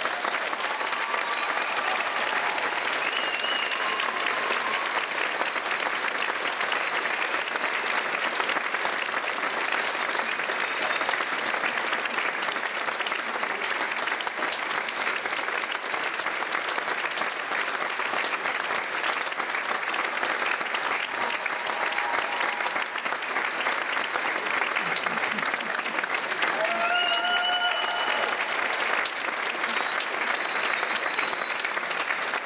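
Arena audience applauding steadily, with a few high shouts from the crowd rising above it now and then.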